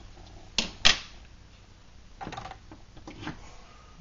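A few light metal knocks and clicks as the brass Trangia alcohol burner and its cap are handled after its flame is put out. The loudest pair comes a little under a second in, with fainter clicks around three seconds.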